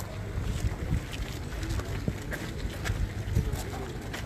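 Wind rumbling on a phone microphone, with indistinct voices of a crowd and a few short clicks.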